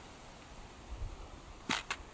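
Two short, sharp clicks in quick succession near the end, over a faint low rumble of wind on the microphone.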